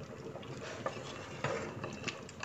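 Metal ladle stirring thick vegetable-and-pasta soup in a pressure-cooker pot, with a couple of light clicks of the ladle against the pot about halfway through.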